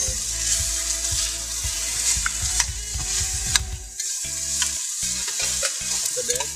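Shredded cabbage, carrot and other lumpia-filling vegetables sizzling in hot oil in a pan as they are sautéed and stirred with a metal spatula, with a couple of sharp clicks midway.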